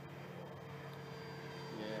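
Steady drone of the FMS 1700 mm Corsair model's electric motor and propeller in flight, a few even tones held without change. A man starts to speak near the end.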